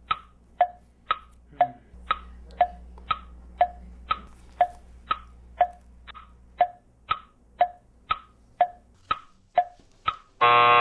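Clock ticking sound effect: a steady tick-tock, two ticks a second alternating between a higher and a lower click, marking time running out. A faint low hum sits under the first part.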